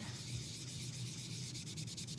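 Soft pastel chalk being scrubbed onto cardstock with a sponge dauber: a steady, dry, papery rubbing hiss made of quick repeated strokes.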